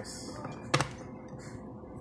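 A single sharp click of hard plastic, about three-quarters of a second in, as the laptop charger's glued plastic case is handled.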